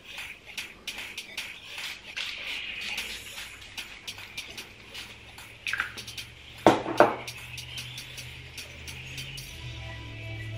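Two quick pumps of a hair-oil spray bottle about seven seconds in, the loudest sounds here, among small handling clicks over faint background music.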